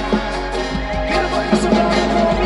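A live reggae-rock band playing an instrumental stretch with no vocals: a drum kit keeping a steady beat under guitar and bass, with a trumpet.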